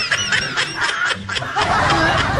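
A person snickering: a quick run of short, breathy giggles.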